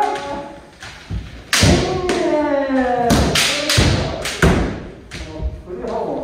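Kendo practice: a long kiai shout, falling in pitch, starts about a second and a half in, amid a run of sharp cracks and thuds from bamboo shinai striking armour and feet stamping on the wooden dojo floor.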